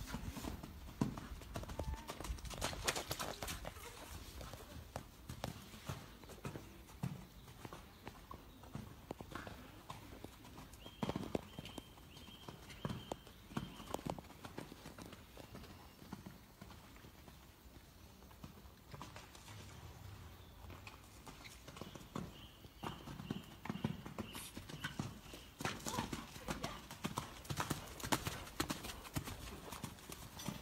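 Hoofbeats of a young piebald mare cantering and jumping under a rider on wet sand. The thuds are dull and irregular, and heavier near the start and in the last few seconds.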